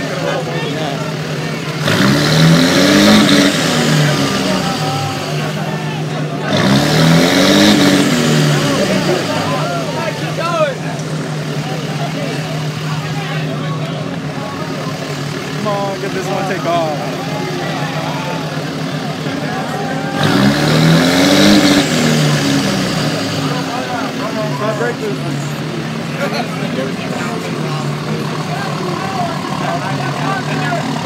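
A vehicle engine revved three times, each rev rising and falling in pitch over about two seconds, over the steady running of idling engines. A crowd's voices chatter throughout.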